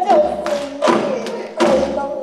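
A woman singing Korean folk song in gayageum byeongchang style, accompanying herself on the plucked gayageum zither. A deep thump falls about every three-quarters of a second, marking a steady beat.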